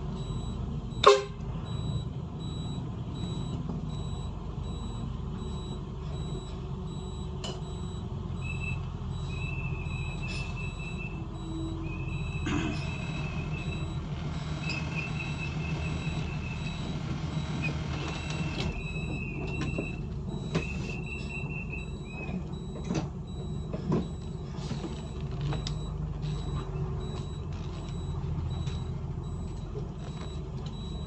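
Bus engine running steadily at low revs while the bus manoeuvres into a parking spot. A sharp knock comes about a second in, and an intermittent high beeping tone sounds for about a dozen seconds in the middle.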